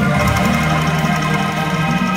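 Angklung ensemble playing a hymn melody: many bamboo angklungs shaken together in a fast rattling tremolo, sounding several sustained notes at once, with low held notes beneath.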